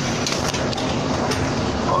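City bus engine running, heard from inside the cabin, with a steady rumble and a few short clicking rattles.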